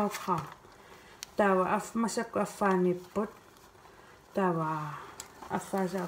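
A woman's voice in short spoken phrases with pauses, and a brief click about a second in.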